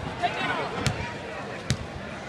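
Basketball bouncing on a hardwood court: three sharp bounces, each less than a second apart, over background chatter.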